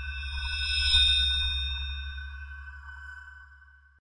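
Electronic outro sting: a chime-like chord of high ringing tones over a deep low drone, swelling for about a second and then slowly fading out.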